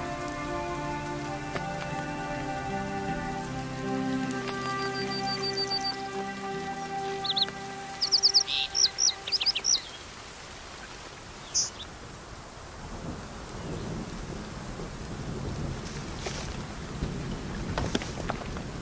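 Steady rain falling, with soft sustained music fading out over the first several seconds. A run of short high chirps sounds in the middle, and a low rumble of thunder sits under the rain in the later part.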